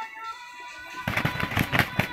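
A chicken struggling in someone's hands and beating its wings hard: a sudden loud burst of rapid flapping that starts about a second in.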